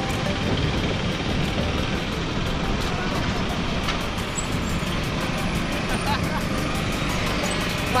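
Steady wind rush on a helmet-mounted camera's microphone while cycling, with road traffic behind it. A voice cries out right at the end.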